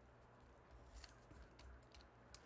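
Faint cutting of a sheet of painted paper with a hand blade: a few short, crisp snips and scratches, about a second in and again near the end.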